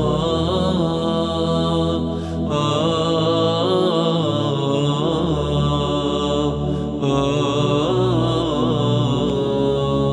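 Ilahi (Albanian Islamic hymn) vocal music: a voice sings a wavering melody without clear words over a sustained low drone, with brief breaks between phrases.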